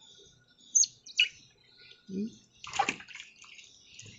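Otter giving two short, high chirps, then splashing and sloshing water as it climbs into a plastic basin of water near the end.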